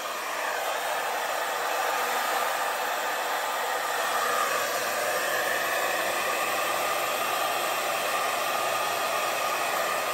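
Handheld hair dryer blowing steadily, a continuous rush of air with a faint motor whine that shifts slightly higher about four seconds in. It is pushing a puddle of fluid acrylic paint outward into a bloom.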